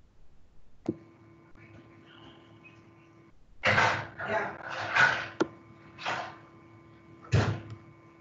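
An open microphone on a video call. It clicks on and picks up a steady electrical hum, then, about halfway through, a run of loud rustling and handling noises. One more follows near the end.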